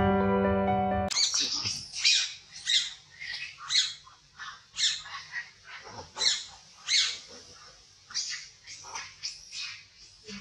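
Intro music cuts off about a second in. Then comes a series of short, high-pitched animal calls from the forest, repeating roughly once a second.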